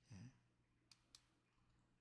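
Near silence: room tone, with a faint short sound at the start and two faint clicks about a second in.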